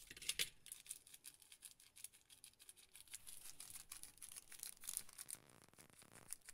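A hand mixing chilli-masala-coated fish pieces in a metal pan: a faint, irregular run of small wet clicks and scrapes.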